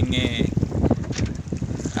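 Wind buffeting the microphone over open sea: a steady, gusty low rumble.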